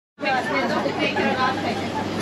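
Several people's voices chattering and talking over one another, over a steady low hum; the sound cuts in abruptly just after the start.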